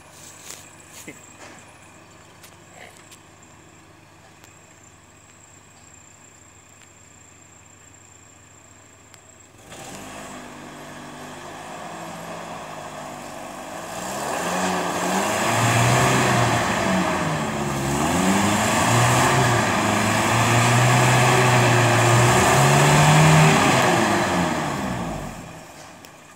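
Toyota crawler truck's engine idling quietly, then picking up about ten seconds in and from about fourteen seconds run hard, its pitch rising and falling as the driver works the throttle on the climb, before dropping back near the end.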